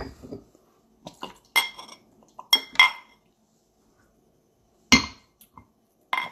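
Glass clinking: a glass beer bottle and a drinking glass knocking together as they are handled, about six short, sharp ringing clinks. The loudest clink comes about five seconds in.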